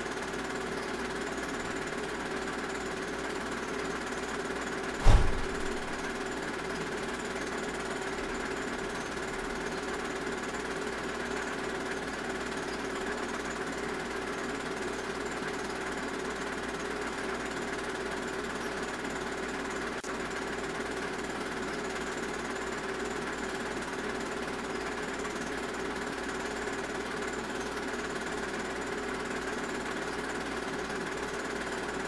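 Steady mechanical running noise with a constant hum, broken once about five seconds in by a single deep thump, the loudest sound here.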